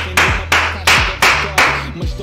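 A steady run of handclaps, about two and a half a second, over a hip-hop beat's deep bass and kick drum.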